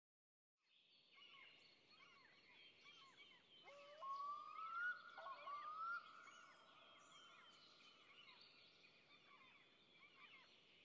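Faint chorus of birds chirping, with two rising whistled notes about four to six seconds in.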